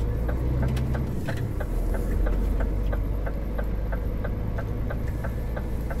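Semi truck's diesel engine running, heard inside the cab, with the turn-signal indicator ticking evenly about two to three times a second.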